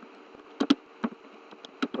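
Computer keyboard keys clicking as a few letters are typed, about half a dozen irregular clicks, over a steady low buzzing hum.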